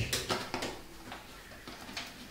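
Faint handling noises: a few light clicks and a soft rustle as small hand tools and a sheet of paper are moved about on a washing machine's top panel.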